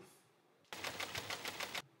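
Rapid ticking of a spinning game-show prize wheel, a sound effect that starts about two-thirds of a second in and stops suddenly shortly before the end.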